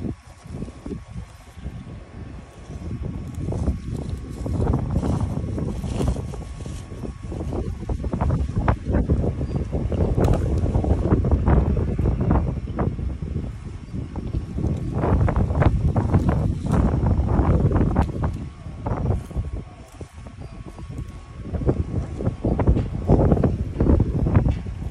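Wind buffeting the microphone: a gusting low rumble that swells and eases, loudest in the middle and again near the end, with brief crackles from leaves and stems being handled.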